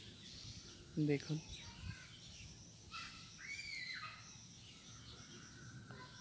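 Faint outdoor ambience with a few scattered bird calls, the clearest a single arched, whistled note a little past halfway.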